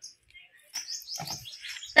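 Small bird chirping: a quick run of short, high notes beginning under a second in, with a brief soft knock or rustle close by partway through.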